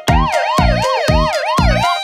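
Cartoon police car siren sound effect: a quick wail that sweeps up and down several times a second, over children's music with a steady beat.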